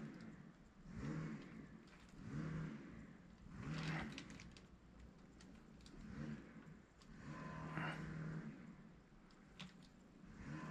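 A man's voice, faint and wordless, in short sounds that come again about once a second.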